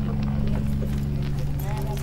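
A steady low drone with scattered light knocks, and a few short pitched sounds that rise and fall near the end.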